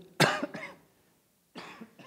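A man coughing into a handheld microphone: one sharp, loud cough about a quarter second in, then a quieter sound about a second and a half in. The cough comes from a chest cold.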